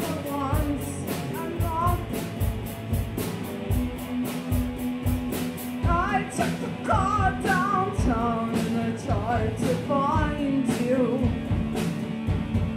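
Live rock band playing: electric guitar, drums with regular hits and a singer's voice in short phrases over a held bass note.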